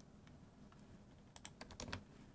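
A few quick, faint computer keyboard keystrokes clustered in the second half, after near silence.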